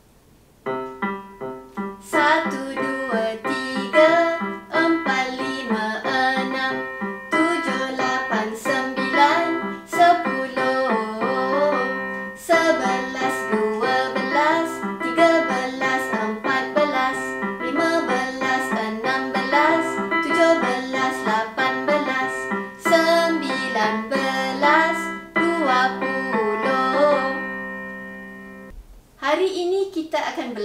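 Children's counting song for the numbers one to twenty, sung over an electric keyboard backing. It starts just under a second in and stops shortly before the end.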